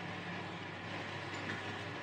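Several electric room fans running, a steady rushing noise with a faint constant hum.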